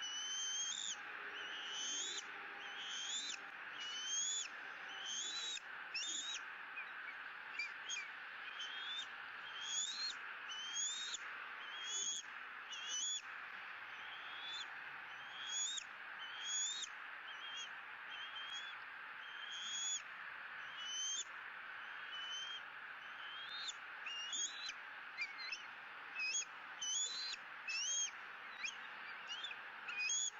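Juvenile bald eagle begging with a long run of thin, high chirps, each rising in pitch, one to two a second, over a steady hiss.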